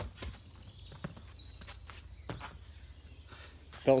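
A few irregular footsteps on tarmac, sharp and spaced about a second apart, over a faint steady outdoor background, with a brief faint high chirp in the middle.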